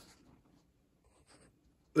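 Near silence: quiet room tone with a few faint, brief soft noises.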